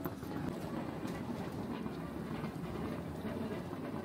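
Wheeled suitcases rolling over a hard floor, with footsteps: a steady rumble with small ticks running through it.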